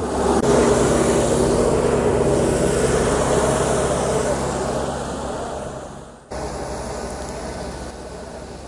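Tractor engine running close by, loud and steady. It dies away near the end, then breaks off at a cut to a quieter steady background.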